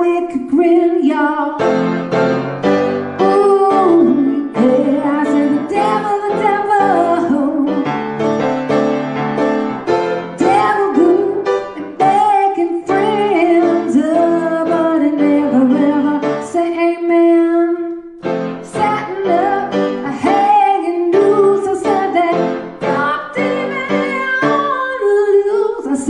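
A woman singing while she plays a grand piano.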